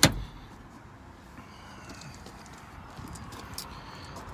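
A single sharp knock right at the start, then a low background with faint rustling and a few light clicks.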